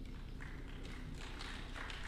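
A pause in speech: faint room tone over a steady low hum, with a few light clicks.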